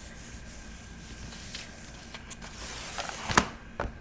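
Hands rubbing a sheet of paper pressed onto a Gelli printing plate, a soft steady rubbing hiss as the paper is burnished to lift the paint. Near the end a few sharp paper crackles as the sheet is peeled off the plate.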